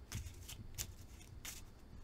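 A deck of tarot cards being shuffled by hand: a few faint, irregularly spaced card flicks and slaps.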